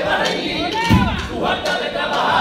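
A crowd of voices shouting and cheering at the end of a carnival pasodoble, with one low thump about a second in.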